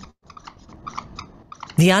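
A marker pen scratching across a drawing surface in a quick run of short, irregular strokes. A narrator's voice starts near the end.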